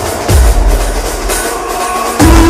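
Dramatic background score: a deep drum hit with a falling boom about a third of a second in, followed by held tones.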